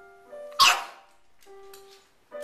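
A Boston terrier barks once, a short loud bark about half a second in, over piano notes ringing and dying away.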